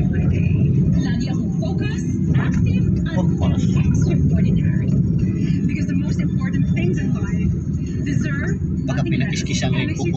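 Steady low rumble of a car driving in traffic, heard from inside its cabin: engine and tyre noise at an even level.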